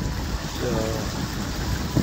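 Lake water rushing along the hulls of a Hobie Getaway catamaran under sail, with low wind rumble on the microphone. A short voiced murmur from the sailor comes partway through.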